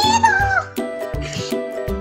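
Children's background music with a steady beat; in the first second a short high-pitched squeal, like a meow, wavers and then slides down in pitch.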